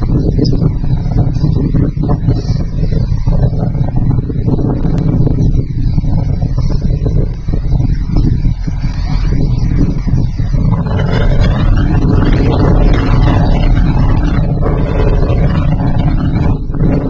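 Crane's heavy engine running steadily as it hoists a load, a dense low rumble that grows louder and fuller about eleven seconds in.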